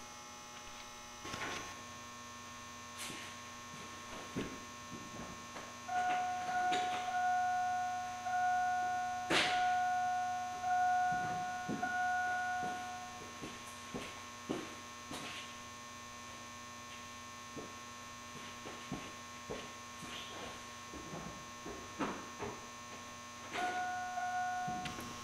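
Steady electrical mains hum with scattered clicks and knocks. From about six seconds in, a steady buzzer-like tone sounds for about seven seconds, broken by a few short gaps, and it returns briefly near the end.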